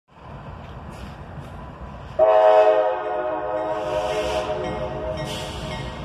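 CSX locomotive's air horn sounding one long chord blast, starting about two seconds in, loudest at first and then held a little softer, over the low rumble of the approaching train.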